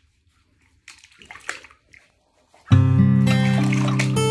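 Bath water splashing and sloshing a few times as skin is washed in a bathtub; about two-thirds of the way in, background music with strummed acoustic guitar starts abruptly and becomes the loudest sound.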